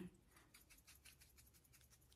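Near silence: room tone with faint, rapid soft ticks.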